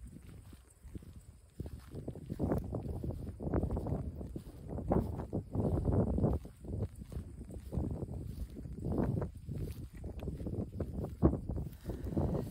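Footsteps walking through dry grass, a dull thud about twice a second, beginning about a second and a half in.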